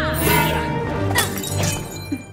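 Dramatic orchestral film score with a glass slipper being smashed, a sharp shatter of breaking glass over the music.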